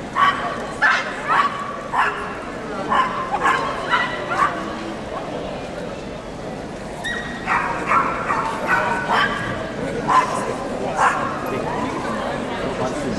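A small dog yapping in short, high-pitched barks, coming in several clusters of quick yaps.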